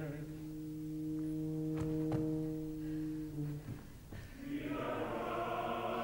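A long steady foghorn note from an offstage tuba, held for about three and a half seconds, with a few soft knocks in the middle of it. Then an offstage opera chorus comes in on a sustained, wavering chord calling out.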